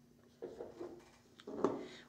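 A small yellow calcite crystal set down on a table with a light knock about three-quarters of the way through, after some faint handling sounds.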